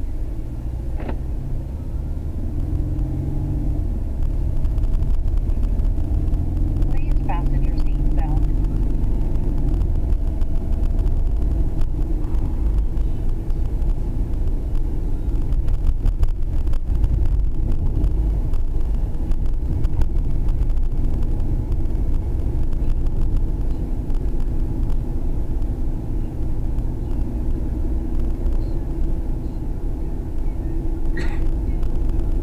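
Mercedes-Benz car driving, heard from inside the cabin: a steady low rumble of engine and road noise.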